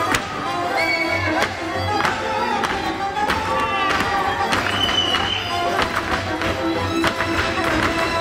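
Hungarian folk dance music: a fiddle melody over a steady low bass line, with the dancers' shoes tapping and stamping on the stage floor.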